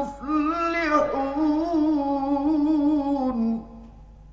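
A male Quran reciter chanting in the ornamented mujawwad style: one long melismatic line whose pitch wavers, then settles lower and breaks off about three and a half seconds in. A faint low hum and hiss from the old recording lie underneath.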